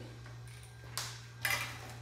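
A sharp metallic click about a second in, then a short light rattle of metal as a cassette tool is handled against a bicycle's steel cassette cogs, over a steady low hum.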